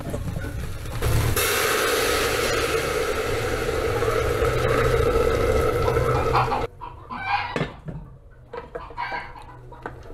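Hot water poured in a steady stream from a kettle into an aluminium pressure cooker of frying chicken gizzards, starting about a second in and cutting off suddenly about two-thirds of the way through. A few short chicken clucks follow near the end.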